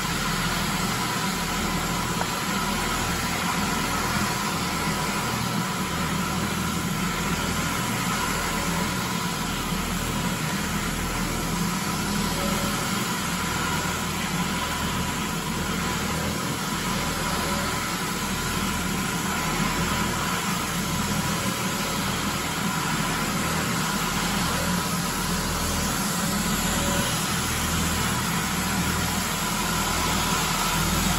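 Advance SC750 walk-behind floor scrubber running as it cleans the floor: a steady machine drone with a constant whine over a low hum.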